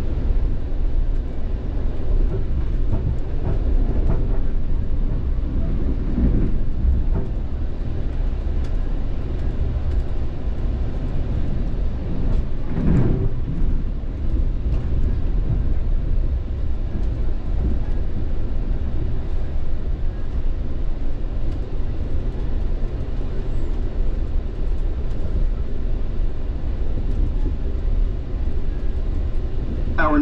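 Interior of a Metrolink commuter train car in motion: the steady low rumble of wheels running on the rails. A brief louder noise stands out about halfway through.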